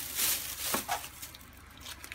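Thin plastic shopping bag crinkling as a hand rummages in it, with a short tap about three-quarters of a second in, then quieter handling.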